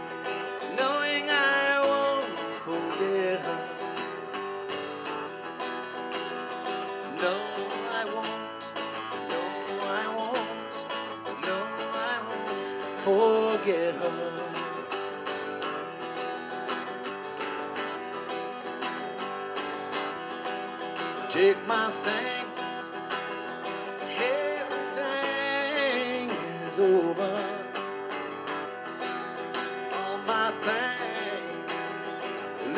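Steel-string acoustic guitar played live, a slow unaccompanied introduction before the first sung verse.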